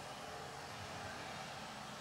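Faint steady background hiss with no distinct sounds: room tone.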